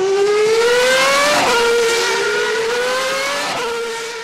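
Racing car engine accelerating hard, its pitch climbing and then dropping sharply at an upshift about a second and a half in and again near the end, over a rushing noise.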